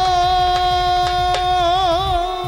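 Baul folk song: one long held sung note that wavers near the end, over a fast roll of hand-drum strokes.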